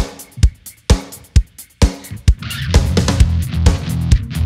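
Live rock band: the drum kit keeps a steady beat of a little over two hits a second, then bass guitar and electric guitar come in under it near the end, opening the next song.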